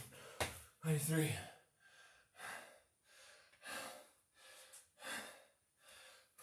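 Heavy, fast panting of a man out of breath partway through a set of Navy SEAL burpees, about three breaths every two seconds. A short knock about half a second in.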